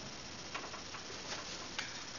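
Quiet room tone with a few faint clicks, the sharpest one near the end.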